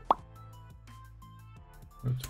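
A short plop sound effect about a tenth of a second in, followed by soft background music with faint keyboard clicks.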